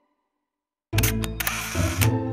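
Silence for about a second, then a camera shutter fires several times in quick succession, ending in a half-second burst of noise, as music comes in underneath.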